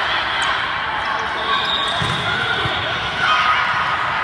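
Babble of many voices from players and spectators echoing around a large gym, with thuds of volleyballs being played and bouncing.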